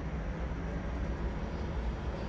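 Steady low rumble and hum of a TTC Flexity Outlook streetcar, heard from inside the passenger cabin.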